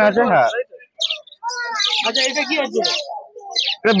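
Caged pet birds chirping: short high chirps about a second in and again shortly before the end, with more chirping mixed into murmured voices in between.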